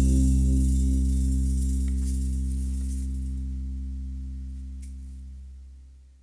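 A band's final chord ringing out on acoustic guitar, electric guitar and bass guitar, with a cymbal wash that fades away first, about halfway through. The whole chord dies away steadily until it is nearly gone at the end.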